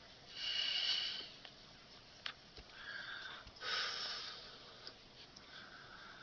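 Two breaths close to the microphone, each about a second long, the first about half a second in and the second near the middle.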